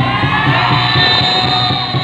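A roomful of voices singing a Hindi worship song together over loud backing music, with long held, rising notes.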